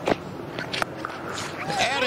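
Cricket bat striking the ball out of the middle with a sharp crack just after the start, followed by a fainter knock. A commentator's voice comes in near the end.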